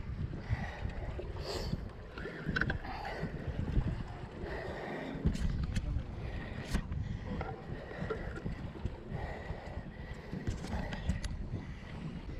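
Wind buffeting the microphone over the rush of sea water around a small boat, with a few sharp clicks scattered through.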